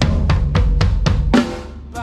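Drum kit played in a quick run of hits on drums and cymbals, about five strikes a second, ending with a louder cymbal crash about a second and a half in.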